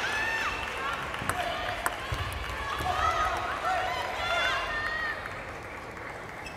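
Several high-pitched voices shouting and calling out across a sports hall, fading toward the end, with a few sharp clicks.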